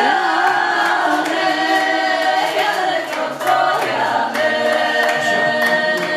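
A group of voices, mostly women, singing a Polish folk song of the Kurpie tradition together without instruments, in a loud open 'full voice' style with long drawn-out notes.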